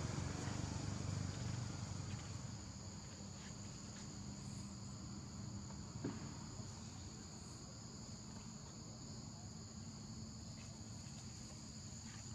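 Insect chorus from the surrounding forest: a steady high-pitched drone at two pitches. A low rumble fades out over the first couple of seconds, and there is a single click about halfway through.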